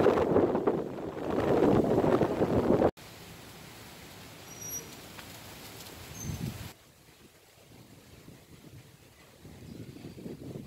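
Wind buffeting the microphone, a loud rumbling rush for about three seconds that cuts off abruptly. After it comes only a faint steady outdoor hiss.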